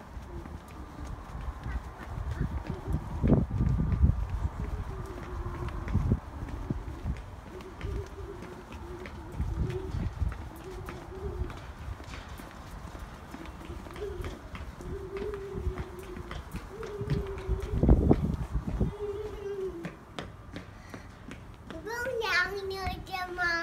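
Footsteps on a concrete ramp, a toddler's and an adult's, as short irregular taps, with bursts of low rumble about three seconds in and again near the end. In the second half a small child hums or vocalizes without words in several short, wavering notes.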